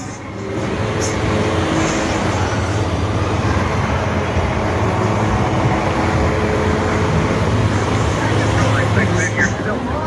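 Diesel engine of a Freightliner semi truck running close by, a steady low drone that swells over the first second and then holds even.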